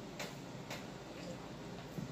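Three faint, unevenly spaced clicks over a low steady room hum.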